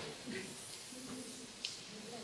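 Quiet background with faint, indistinct voices murmuring at a distance, and a small click a little past halfway.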